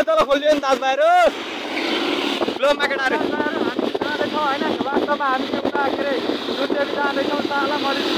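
A man's voice shouting for about the first second, then steady wind and road noise from a motorcycle riding along a wet road, with snatches of voice over it.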